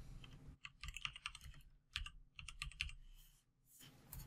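Computer keyboard typing, faint: a quick run of key clicks from about half a second in until about three seconds in, as a short word of new button text is typed.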